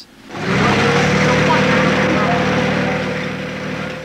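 Lorry engine running steadily while it unrolls a metal trackway roadway from a drum. A whine rises slightly in the first second and then holds, over dense noise.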